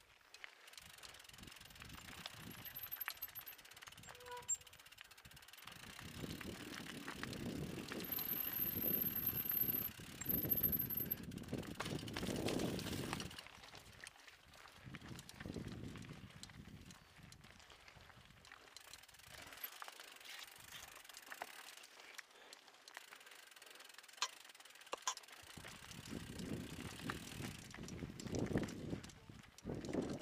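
Mountain bike rolling down a loose, rocky trail: tyres crunching over gravel and stones and the bike rattling, louder over a rough stretch in the middle and again near the end. Faint ticking of the rear freewheel can be heard in the quieter stretch while coasting.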